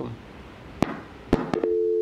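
Telephone call-in line connecting: two sharp clicks, then a steady two-note telephone tone starting about one and a half seconds in.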